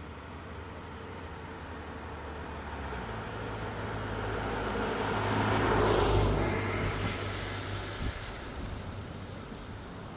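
A motor vehicle, most likely a car, driving past, growing louder to a peak about six seconds in and then fading away. A brief knock comes about eight seconds in.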